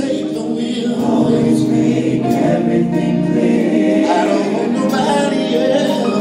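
Live gospel vocal group singing through a PA system, several voices holding long sustained chords, with a light regular tick from percussion above the voices.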